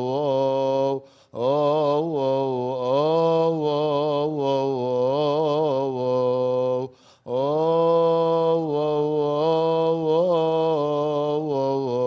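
A man chanting a Coptic Orthodox liturgical hymn alone, in long held notes with melismatic ornaments. He breaks off briefly for breath about a second in and again about seven seconds in.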